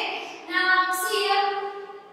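A voice speaking in drawn-out, sing-song tones, with long held vowels.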